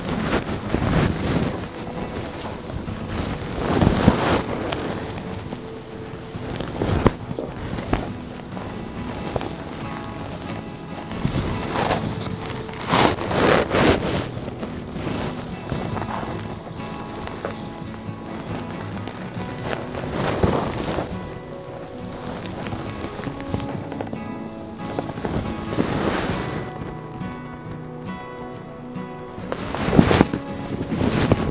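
Background music with steady held tones, overlaid by several bursts of silk fabric rustling and brushing close to the microphone as a tussar dupatta is handled and draped.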